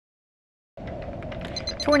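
Silence, then a steady electronic hum over a low rumble starts under a fast run of short, high beeps in the segment's produced sound bed. A voice starts at the very end.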